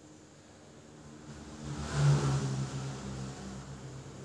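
A motor vehicle passing by: its engine and road noise swell to a peak about two seconds in, then fade away.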